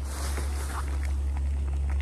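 Jetboil Zip gas burner running steadily under its cup of boiling water, heating a meal pouch.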